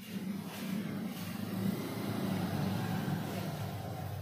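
A steady low rumble with a hiss over it, swelling a little through the middle and easing toward the end, like a motor vehicle running nearby.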